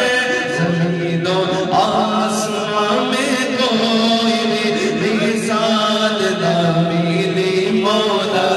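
A man singing a naat, an unaccompanied Urdu devotional song, into a microphone, in long held and ornamented melodic lines.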